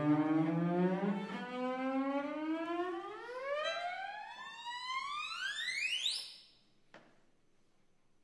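Bowed strings, starting low in the cello's range, sliding in one long rising glissando for about six seconds up into a very high register, then cutting off suddenly. A soft click follows about a second later, then near silence.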